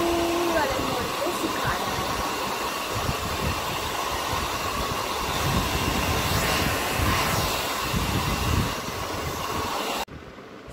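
Vega handheld hair dryer running on its cool setting: a steady rush of blown air with a faint steady whine, drying wet hair.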